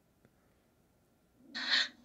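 Near silence, then a short breathy hiss with no clear pitch about a second and a half in, lasting under half a second.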